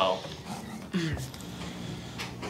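A short, low human vocal sound, falling in pitch, about a second in, over faint room tone.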